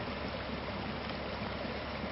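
Muddy storm runoff rushing steadily over and through rocks, water that has breached the silt ponds and is going around the lower silt fence.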